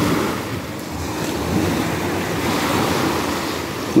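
Small, calm waves breaking and washing over a low rock ledge at the shoreline, the surf swelling twice.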